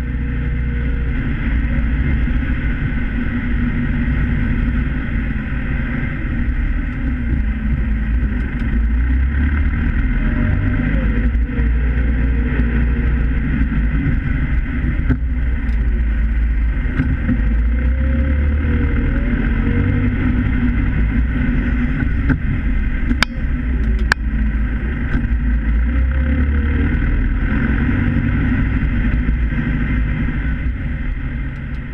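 Valtra N101 tractor's four-cylinder diesel engine running steadily under a snow-plowing load, heard from inside the cab. A fainter whine rises and falls now and then over the drone, and two sharp clicks come about a second apart a little after twenty seconds in.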